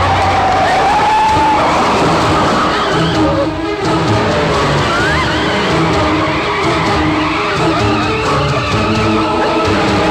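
Film soundtrack of an SUV skidding and sliding across loose dirt, its engine running, under a rhythmic action background score.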